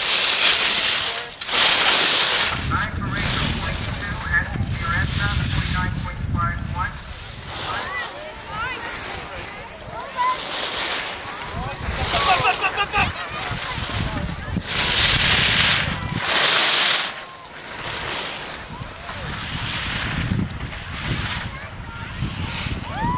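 Ski edges scraping across hard-packed snow in hissing bursts, about a second each, as racers carve turns. Distant voices and a low wind rumble sit under them.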